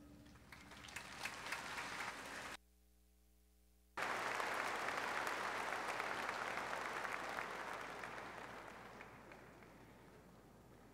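Large crowd applauding in an arena, thin at first and building. The sound cuts out completely for about a second and a half a little over two seconds in, then returns as full applause that fades away near the end.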